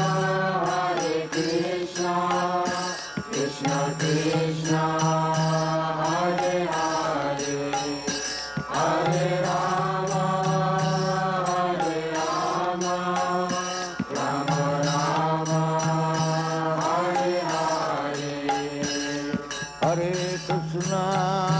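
Background music: sung devotional chanting in long melodic phrases over a steady low drone, the drone pausing briefly between some phrases.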